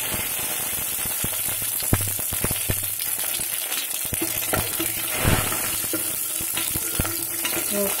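Tempering of chana dal, mustard seeds and green leaves frying in hot oil in a pot: a steady sizzle with frequent sharp crackles, and a spoon stirring the mixture.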